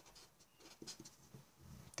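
Faint strokes of a marker pen writing on a sheet of paper: a few short scratches as a word and an arrow are drawn.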